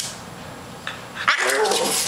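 French bulldog letting out a short pitched groan in the last half second, starting with a breathy rush.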